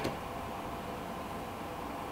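Quiet, steady room tone and background hiss in a small room, with no distinct sounds.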